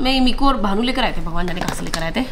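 A person's voice in a fairly high register, talking or humming, with a couple of light clicks or taps.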